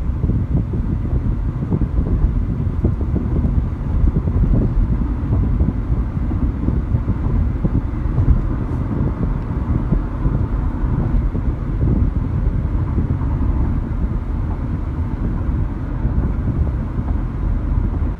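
Cabin noise of a 2012 Nissan Sentra 2.0 accelerating from about 40 to 60 mph: a steady low rumble of tyres on the road and the engine.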